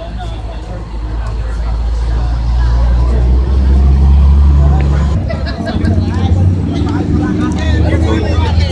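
A motor vehicle engine running, a loud low rumble that builds over the first few seconds, is strongest around the middle, and changes about five seconds in, with people talking over it in the later part.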